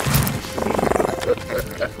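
Sound-designed creature voice of a small dragon: a short low burst, then a rapid rattling growl lasting about a second.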